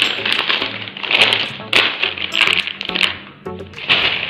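Thin plastic shopping bags rustling and crinkling in repeated bursts as they are handled.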